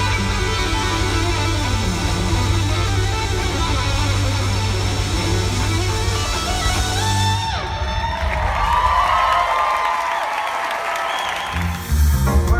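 A live band playing through a theatre PA: electric guitar over drums and bass. About seven and a half seconds in, the bass and drums drop out and the electric guitar carries on alone with bending lead lines, until the sound cuts abruptly to another song near the end.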